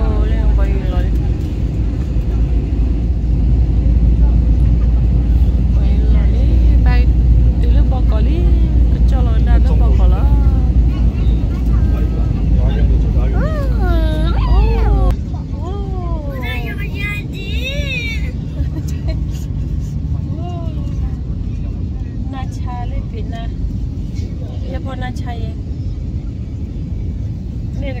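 Steady low rumble of an airliner cabin in flight, with a young child's voice calling and babbling over it in short rising-and-falling bursts. The rumble drops suddenly about halfway through and continues more quietly.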